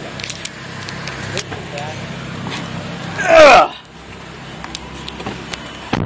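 Audi R8's V10 engine idling, a steady low hum heard inside the cabin. About halfway through, a person's voice bursts out loudly and briefly, and small handling clicks and knocks come from the camera.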